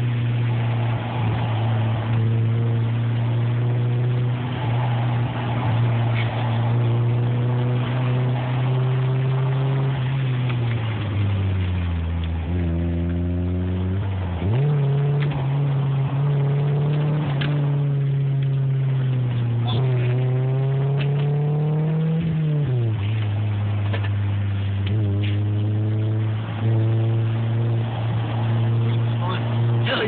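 BMW 318's four-cylinder engine heard from inside the cabin while driving on a track. Its note holds steady, sags and then jumps back up near the middle, and climbs until a sudden drop a little past two-thirds of the way through, which sounds like gear changes under throttle.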